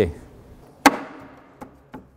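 One sharp wooden knock about a second in as a solid kohu floorboard is set down into place on the wooden joists, followed by a couple of faint clicks.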